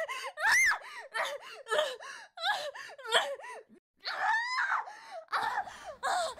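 Women's wordless voices: shrill screams and cries of distress from a woman being pinned down, mixed with another woman's manic laughter. It comes as a string of short, high calls rising and falling in pitch, with a brief break about four seconds in.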